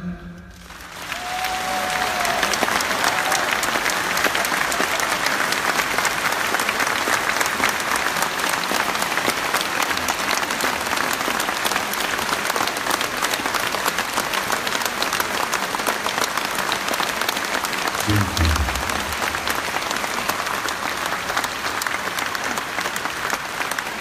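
Large concert hall audience applauding at the end of a song, building up within the first two seconds and then holding steady and continuous.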